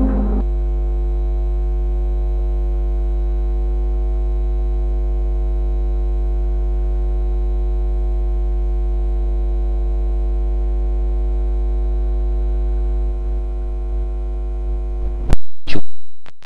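Loud, steady electrical mains hum: a low buzz with many even overtones. It ends about fifteen seconds in with a sharp click and a short dropout.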